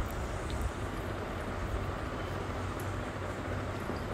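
A steady low hum, with the faint, soft sound of a metal spoon stirring a crumbly paneer and spice filling in a glass bowl.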